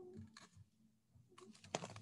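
Faint clicks and rustles of a picture book's pages and cover being handled as it is lowered, a few scattered ones and then a cluster near the end.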